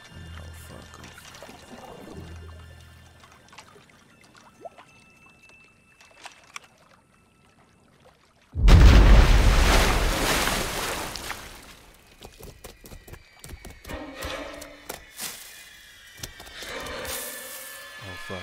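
Horror film soundtrack: a faint low drone, then a quiet stretch. About eight and a half seconds in comes a sudden loud crash with a deep booming low end, which dies away over about three seconds. Scattered clicks and rustles follow.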